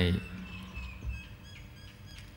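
Faint bird chirps and twitters in the background, just after the end of a man's drawn-out spoken word.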